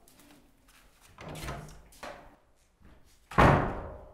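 Chalk scraping on a blackboard in two strokes, followed near the end by a single loud thump that dies away over about half a second.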